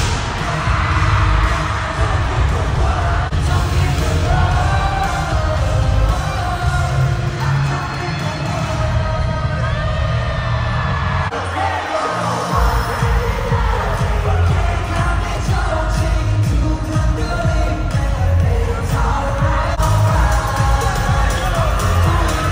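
Live K-pop concert: a pop song with heavy bass and singing over an arena PA, mixed with the crowd cheering. The bass cuts out briefly about halfway through.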